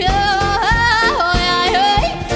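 Live jazz band playing with a woman singing a wordless, high melody with vibrato, sliding between long held notes, over drums and electric bass.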